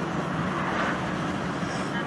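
Steady road and engine noise inside a moving car's cabin, a constant low rumble.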